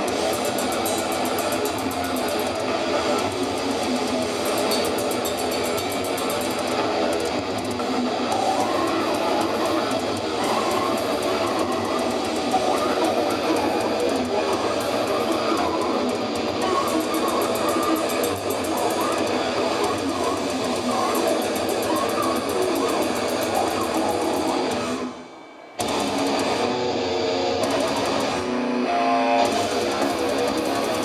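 Death metal band playing live: distorted electric guitars and drums in a dense, loud wall of sound. Near the end the band stops dead for a split second, then comes back in.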